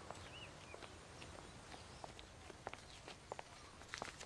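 Quiet outdoor ambience with faint, scattered footsteps.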